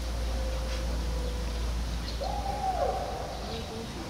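A single hooting animal call about two seconds in, held briefly and then falling in pitch, followed by a few short fainter notes, over a steady low hum.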